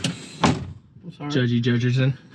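A sharp knock, then a thump like a door or panel inside a truck cab, followed by a man's low voice held for under a second.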